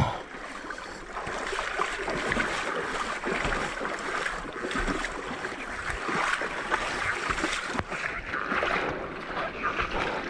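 Muddy floodwater sloshing and splashing around an adventure motorcycle as it wades through a flooded dirt lane, a steady churning rush with irregular splashes that sets in about a second in.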